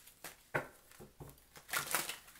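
Tarot cards being handled and shuffled: a few short rustles and snaps of card stock, the sharpest about half a second in and near the end.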